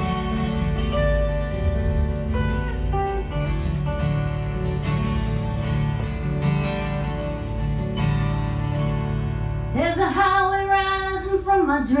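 Two acoustic guitars playing an instrumental passage of a song. Near the end a woman's voice comes in singing.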